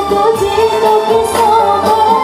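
Live gambus ensemble playing a shalawat song: a woman sings a wavering melody with vibrato over keyboard, gambus (oud) and hand drum strokes.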